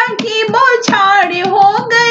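Hindi dehati folk singing of a Shiv vivah geet: a voice holds a wavering melodic line over a steady rhythm of hand claps.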